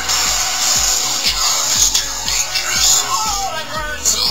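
Music with a steady beat and some voice from a mobile TV broadcast, playing through the LG Vu cell phone's small built-in speaker.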